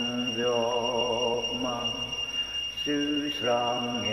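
A man singing a hymn slowly and unaccompanied, two long drawn-out phrases of held notes with a slight waver and a short breath between them. A faint steady high-pitched whine sits under the voice.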